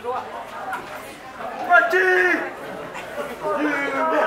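People chattering, with one close voice loudest about halfway through and again near the end.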